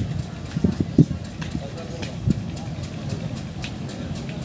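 A slowly approaching diesel-hauled local train, with irregular low knocks and clatter from its wheels and a murmur of people's voices.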